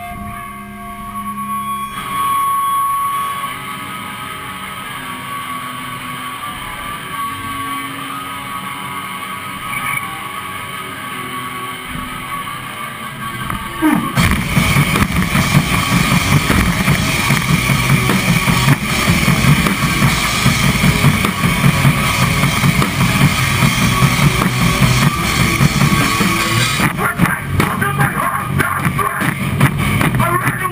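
Melodic hardcore band playing live: a quieter intro of held notes, then about fourteen seconds in the drums, bass and guitars all come in together, much louder, and keep going.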